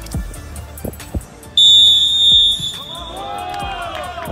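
Background music with one long, shrill whistle blast about a second and a half in, lasting about a second: a referee's whistle at the start of play.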